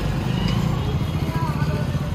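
Busy street din: a steady low rumble of traffic with voices murmuring in the background.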